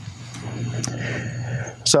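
Room tone in a lecture hall: a steady low hum with faint background noise and a couple of faint brief clicks, then a man's voice starts again right at the end.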